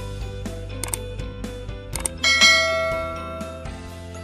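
Background music with a click sound effect, then a bright bell chime about two seconds in that rings down; the chime is the loudest sound.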